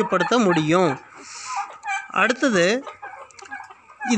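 A flock of domestic turkeys calling in a pen, mixed with a voice in the first second and again a little after two seconds, and quieter in between.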